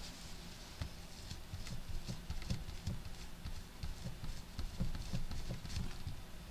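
Irregular soft knocks and taps, a few a second, from hands handling things on a desk while a cleaning rag is fetched and brought to the work surface.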